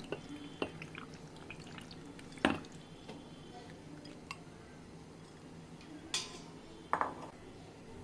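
Thick spiced curd poured from a glass bowl over soaked urad dal vadas in a steel bowl, with a few light clinks and knocks of glass and spoon against the steel bowl. The loudest knock comes about two and a half seconds in.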